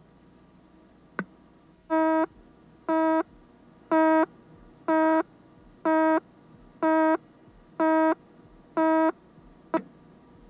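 Countdown leader beeps: a buzzy tone about a third of a second long sounds once a second, eight times, one for each number of the countdown. A sharp click comes shortly before the first beep and another just after the last, over faint tape hiss.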